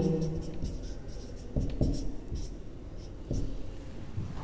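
Marker pen writing on a whiteboard: several short, irregularly spaced strokes as a line of text is finished.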